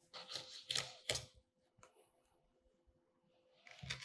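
Fillet knife cutting along a sea bass's rib bones: a few faint, crisp crackles in the first second and a half.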